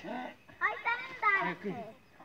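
People's voices, talking or calling out, with no other sound standing out.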